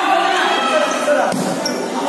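Players and spectators talking and calling out during a volleyball rally, with one sharp smack of the volleyball being struck a little over a second in.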